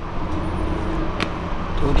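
A steady low motor-vehicle rumble, with a single sharp click about a second in.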